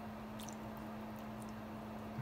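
Chopsticks working ramen noodles in a bowl of broth: faint wet squishing and a few light clicks over a steady low hum.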